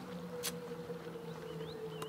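Quiet outdoor lakeside ambience: a steady low hum, a single sharp click about half a second in, and a few faint high chirps near the end.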